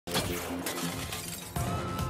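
News title-sequence sound effects over music: a glass-shattering crash at the very start, its noise fading away, then a second hit about a second and a half in as a rising siren-like tone begins.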